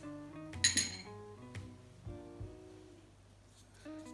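A small ceramic dish clinks sharply against a glass mixing bowl about half a second in, ringing briefly, with a fainter knock a second later, over soft background music.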